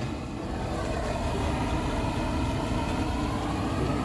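Single-burner LPG pressure stove with its gas valve opened and the burner lit, giving a steady rushing flame noise that grows a little louder in the first second and then holds.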